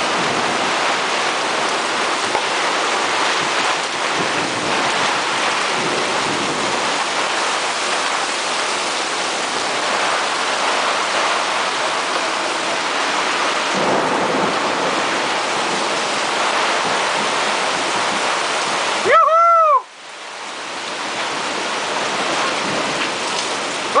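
Heavy rain pouring down on a moored sailboat's canvas cockpit enclosure and deck, a steady dense hiss. Near the end a short, loud tone rises and falls in pitch.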